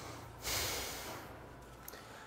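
A man's single breath through the nose, a short snort-like hiss about half a second in that fades over about a second. It is heard close up on a clip-on microphone.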